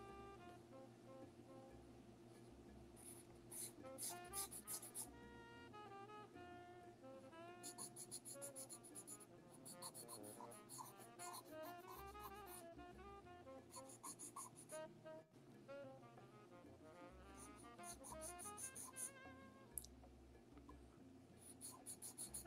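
Faint background music with several short runs of pencil strokes scratching on sketch paper.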